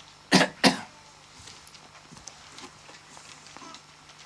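A person coughing twice in quick succession, two short, loud coughs close together near the start, followed by faint small rustling sounds.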